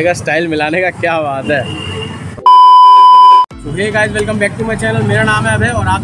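A steady electronic bleep tone at about 1 kHz, loud and lasting about one second, cutting in about two and a half seconds in and stopping abruptly. It is the kind of bleep edited over speech, between stretches of a man talking.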